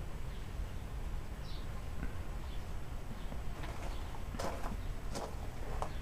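Low steady background hum, with a few light clicks and knocks in the second half: handling noise as the camera is moved around the computer case.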